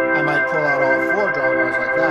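1969 Hammond B3 organ holding a full chord with more drawbars pulled out, bright with many high overtones, the way the drawbars are built up for a song's chorus to add energy. An inner voice in the chord moves about halfway through.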